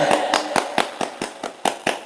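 One man clapping his hands overhead, quick even claps about four or five a second that grow gradually quieter.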